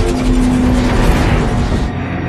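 Dense action-film sound mix: a loud, continuous rumble of effects under music, with a held low tone in the first second.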